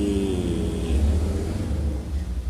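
A steady low rumble of background noise throughout. A man's voice trails off in one drawn-out syllable in the first half-second.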